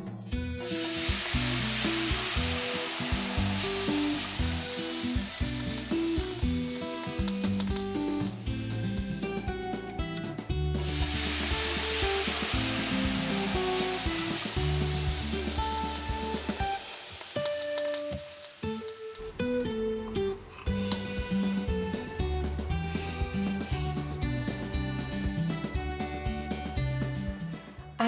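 Dosa batter sizzling on a hot nonstick tawa as it is poured and spread with a ladle. The sizzle is loud in two stretches, breaks off sharply about ten seconds in, and dies down after about seventeen seconds, with background music throughout.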